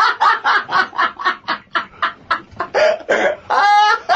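A man laughing hard in rapid bursts, about four to five a second, rising into one long high-pitched squeal near the end.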